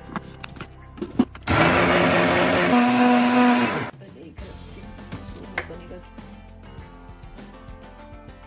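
Countertop jug blender motor running for about two and a half seconds, blending milk into a chocolate milkshake. It starts abruptly, settles into a steady whine partway through, and cuts off suddenly. Background music plays under it.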